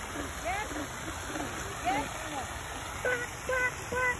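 Frogs calling from a pond: many short, overlapping croaks and chirps that rise or fall in pitch, with three louder, clipped calls near the end.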